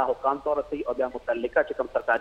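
A man speaking Pashto in continuous talk, with only short pauses between phrases.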